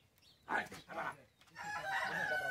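A rooster crowing near the end, a long drawn-out call, after a short exclamation from a woman.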